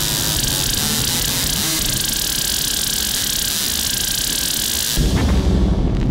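Eurorack modular synthesizer FM patch, the E-RM Polygogo oscillator frequency-modulated by a WMD SSF Spectrum VCO through Mutable Instruments Ripples filters, putting out a dense, hissing noise wash. About five seconds in it switches to a heavy low rumble that pulses.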